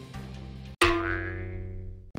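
A faint music bed, then about a second in a single sudden ringing musical hit with many overtones that dies away, a transition sound effect between news segments.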